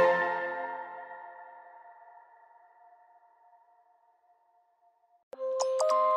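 Electronic background music fading out over about three seconds, then a couple of seconds of silence. Near the end a new electronic track starts abruptly with held synth chords over a quick ticking beat.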